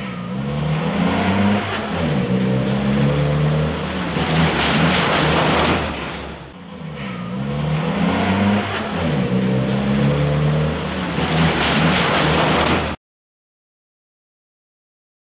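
Fire engine siren, its pitch sweeping up and down over and over, over engine and road noise. The sound cuts off suddenly about a second before the end.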